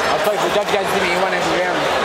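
A man's voice talking, too indistinct to be made out as words, over a steady background din of the hall.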